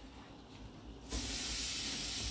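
A lightly oiled sirloin steak sizzling as it goes onto the hot grates of a Swan gas barbecue; the sizzle starts suddenly about a second in and then holds steady.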